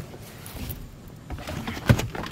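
Handling noise from working at car interior plastic trim and wiring: low rustling with small clicks, and one sharp knock just before the end.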